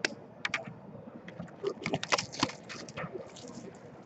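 A sealed trading card box being unwrapped and handled: irregular sharp crackles and clicks of plastic wrap and cardboard, thickest about two seconds in.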